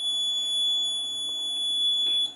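The demo board's small piezo alarm buzzer sounding one steady, unbroken high-pitched tone: the alarm that signals a crash detected by the accelerometer.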